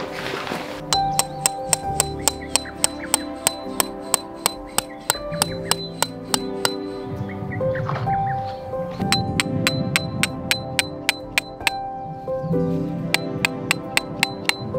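Steel tent pegs hammered into ground with a peg hammer. Each strike is a sharp metallic ping that rings on, about three a second, with a couple of short pauses. Background music plays underneath.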